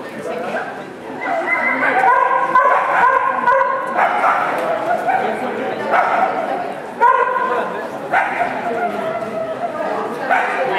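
An agility dog barking and yipping repeatedly during its run, with a person's voice calling over it.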